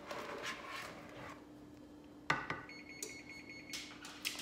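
A single sharp knock a little past the middle, then a high electronic tone with a fine rapid pulse for the last second or so, like a device alarm or beeper, over a faint steady hum.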